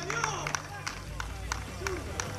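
Men's voices calling out on a five-a-side pitch, with scattered sharp taps of footsteps on the artificial turf, over a low steady hum.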